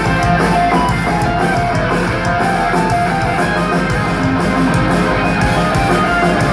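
A heavy metal band playing live, loud and steady: electric guitars over a drum kit, heard from within the audience.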